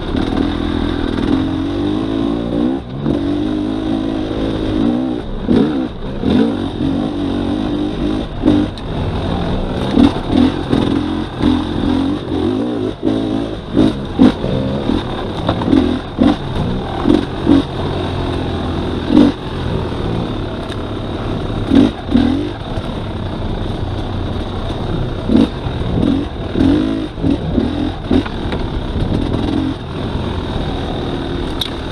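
Dirt bike engine running on a trail ride, its pitch rising and falling with the throttle and frequent short loud surges throughout.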